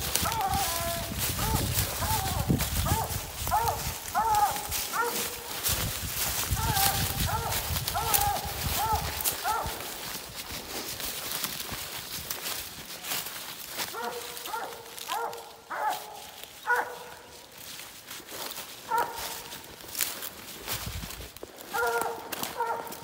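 Coonhound barking treed: steady repeated barks, about one or two a second, that signal a raccoon held up a tree. Footsteps crunch through dry leaf litter under the barking and stop about ten seconds in, after which the barks go on more faintly and more sparsely.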